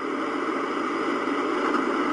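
Television static sound effect: a steady rushing hiss, growing slightly louder.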